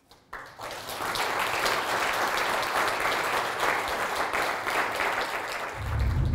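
Audience applauding. It starts about half a second in, fills out within a second and then holds steady; near the end, keyboard music starts underneath it.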